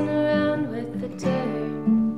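Acoustic guitar being strummed, its chords ringing, with fresh strums about a second in and again near the end.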